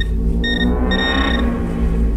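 Garrett handheld pinpointer beeping in two short, high, steady tones about half a second apart, its alert that it has found metal in the soil. Background music with a low drone runs underneath.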